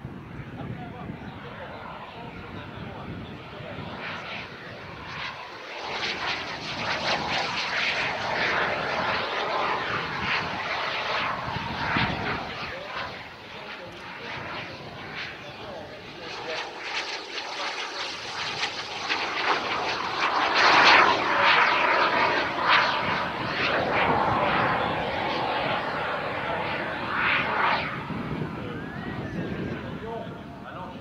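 The twin JetCat P200 model turbojets of a jet-powered Colomban Cri-Cri running through a flying display. The sound swells and fades as the aircraft passes and turns, and is loudest about two-thirds of the way in.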